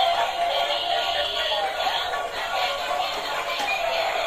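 Battery-powered dancing toys playing their built-in electronic music with a thin synthetic singing voice.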